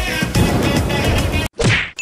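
Electronic intro music that cuts off abruptly about one and a half seconds in. It is followed by a short whoosh-and-hit transition sound effect that sweeps down in pitch.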